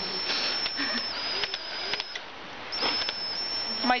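Cordless drill running slowly with a thin, steady high whine, turning a castrating clamp that twists a calf's spermatic cord until it breaks. The whine stops about two seconds in and starts again half a second later.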